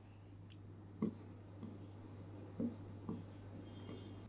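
Stylus writing on an interactive whiteboard screen: a few faint taps and light strokes as letters are drawn, over a low steady hum.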